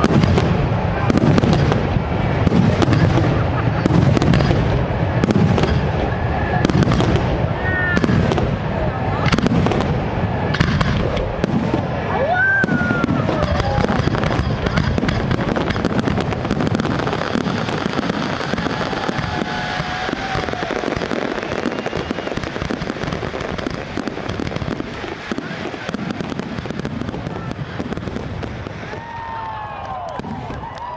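Fireworks going off: a rapid run of bangs and crackles over a low rumble, with crowd voices mixed in. The sound thins and gradually fades over the second half.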